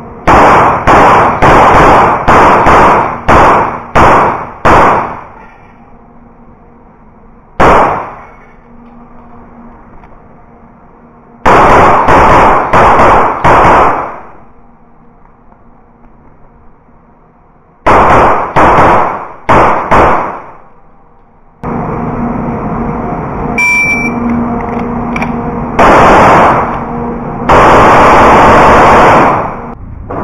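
CZ 75 Shadow pistol fired in strings of rapid shots, with pauses between the strings. The shots are loud enough to overload the microphone. Near the end there is a longer stretch of loud, blurred noise.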